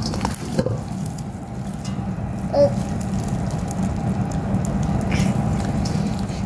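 Hands squishing and kneading foam-bead slime (floam) in a stainless steel bowl: a steady wet crackling with many small pops and clicks.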